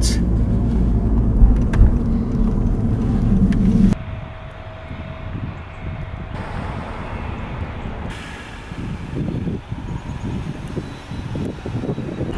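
Car driving, heard from inside the cabin: a steady low engine and road rumble. It cuts off abruptly about four seconds in, giving way to a much quieter open-air background with irregular low rumbles.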